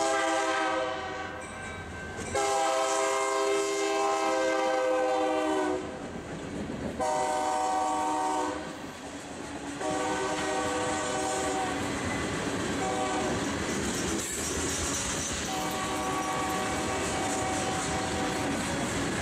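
Diesel locomotive air horn sounding a series of long and short blasts for a grade crossing, its pitch falling as the locomotive passes. Under and between the blasts comes the steady rumble and clatter of freight car wheels rolling by on the rails.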